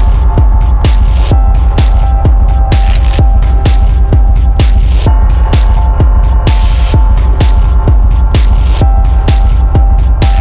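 Dark minimal techno track: a steady, driving beat over a heavy, sustained bass, with a held tone higher up and crisp ticks between the beats.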